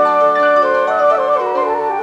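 Live band playing an instrumental break between sung lines: a flute-like lead holds a long note, then plays a stepping downward run over a keyboard accompaniment.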